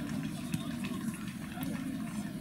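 Steady low outdoor background noise by a football pitch, with one short sharp knock about half a second in.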